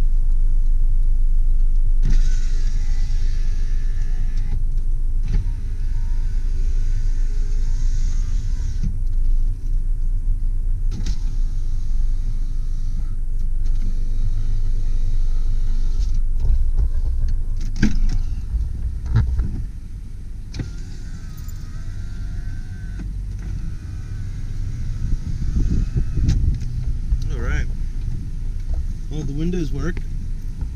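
Power window motors of a 1997 Honda Del Sol whirring in several runs of a few seconds each as the windows are lowered and raised, over the engine idling.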